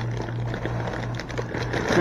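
Plastic produce bag crinkling and rustling as grapes are pulled out of it by hand, with a few light ticks, over a steady low hum.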